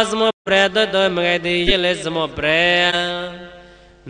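A man's voice chanting Pali verses in the melodic, drawn-out style of Buddhist recitation. There is a brief break just after the start, and the last phrase is held and fades away near the end.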